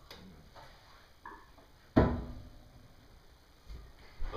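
A single sharp thump about halfway through, fading over about a second, as of something set down on a table. Before it there are only faint small handling noises.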